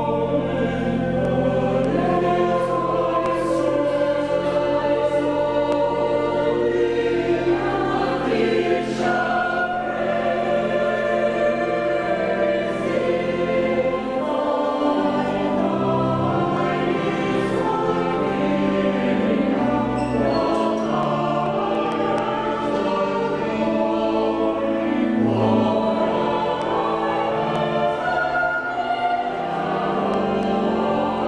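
Church choir of mixed voices singing a choral piece, with long held low organ notes underneath that begin to move more after about fourteen seconds.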